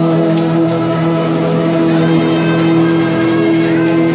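Live music playing an instrumental passage with no singing: a steady, held chord of sustained tones.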